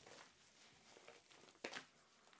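Faint rustling and crinkling of a recycled-plastic shopping bag being handled and repositioned, with one sharper crinkle near the end.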